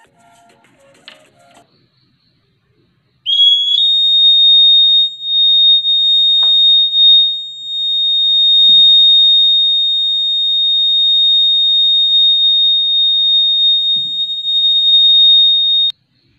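Homemade LPG gas detector's buzzer sounding its alarm: one loud, steady high-pitched tone that starts about three seconds in, rises briefly as it starts, and cuts off suddenly, the sign that its sensor has picked up LPG from the gas stove. A faint click comes about a second in, before the alarm.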